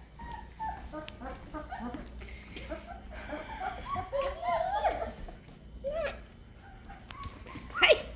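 A litter of 19-day-old Great Bernese puppies whining in many short, wavering cries, puppies that want to nurse.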